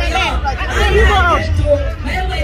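A woman speaking into a handheld microphone, with crowd hubbub and a steady low rumble behind.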